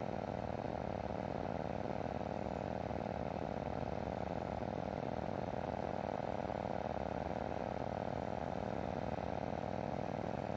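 Steady drone of a small aircraft's engine and propeller with wind rush, heard from on board in flight.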